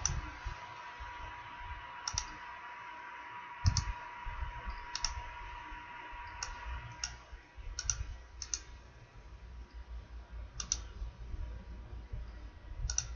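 Computer mouse clicks, about eight of them spaced a second or so apart, some heard as a quick press-and-release pair, over a faint steady hum with a thin steady tone.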